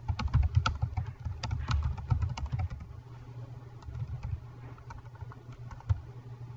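Typing on a computer keyboard: a quick run of keystrokes for the first few seconds, thinning to a few scattered ones, over a low steady hum.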